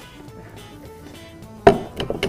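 Quiet background music with short plucked notes. About a second and a half in comes a single loud thud as the upturned metal pot on its serving plate is set down on the wooden counter.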